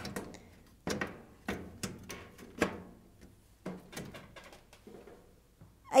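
Sharp knocks and clicks of a cooker's control panel being handled and seated back into place: about five separate taps, roughly a second apart.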